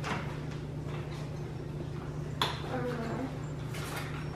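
Nuna Demi Grow stroller frame being unfolded by hand: three sharp clicks and clacks from its joints and latches, at the start, about two and a half seconds in and near the end.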